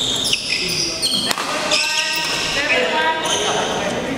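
Court shoes squeaking on an indoor badminton court floor: several short, high squeaks, with a sharp knock about a second in, in a large echoing hall.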